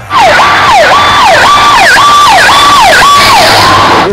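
Emergency vehicle's electronic siren sounding loud in a fast yelp, cutting in suddenly: a high tone that repeatedly drops to about half its pitch and sweeps back up, about twice a second.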